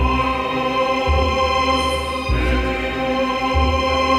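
Solemn choral music: voices holding long sustained chords over a deep bass note that swells and drops back about every second.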